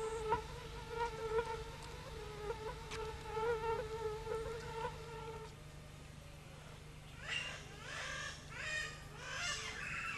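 A flying insect buzzing steadily with a slightly wavering pitch, stopping about five and a half seconds in. Near the end comes a run of short, quick chirping calls.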